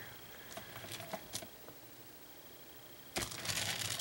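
A few faint clicks over quiet room tone, then about three seconds in a loud rustling scrape lasting under a second as the wooden plate is turned on the work surface.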